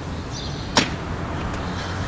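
A single short, sharp knock about a second in, over a steady low background hum.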